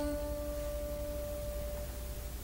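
The last note of a plucked string instrument ringing on as one steady tone and slowly dying away at the end of a musical phrase, over a low steady hum.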